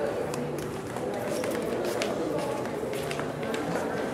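Indistinct background chatter of several voices, steady in level, with a few scattered light clicks and knocks.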